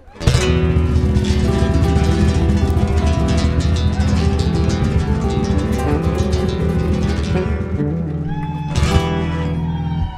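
A live nuevo flamenco band playing: acoustic guitars over electric bass and cajon. The music comes in loud just after the start, hits a strong accent near the end and then stops abruptly.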